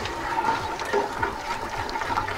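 A spoon stirring crystallised raw honey into lukewarm water in a stainless steel stockpot, with irregular light scrapes and knocks against the metal as the liquid is swirled. This is the honey being dissolved before it goes into the demijohn for mead.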